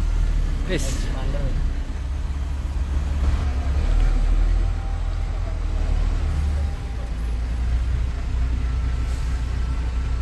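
Diesel engine of a FAW JH6 truck running with a steady low rumble, heard from inside the cab as the truck crawls forward in a traffic jam.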